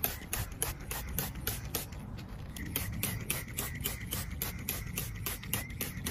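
Hand-held plastic trigger sprayer pumped rapidly, misting an antibacterial solution onto a succulent: a quick, even train of short rasping spray strokes, about six a second.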